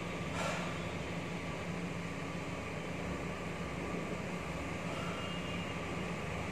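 Steady background hum of the room, with a faint low tone held under an even noise and a faint brief sound about half a second in.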